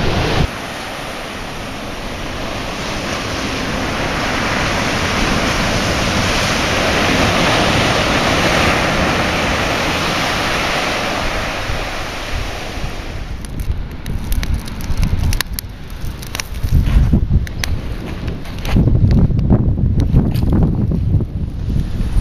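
Ocean surf washing over shoreline rocks: a long rush of water that builds to a peak and then fades away. After that, gusty wind buffets the microphone in irregular low rumbles.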